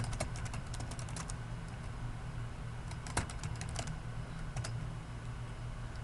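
Computer keyboard typing: a quick run of keystrokes in the first second or so, then a few isolated key clicks, over a steady low hum.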